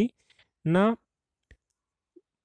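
One short spoken word from a man, followed about a second and a half in by a single faint click; the rest is silence.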